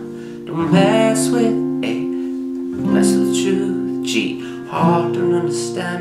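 Acoustic guitar with a capo at the third fret, chords strummed a few times and each left to ring.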